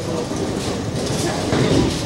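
Bowling alley din: a steady rumble of bowling balls rolling down the lanes, with voices in the background.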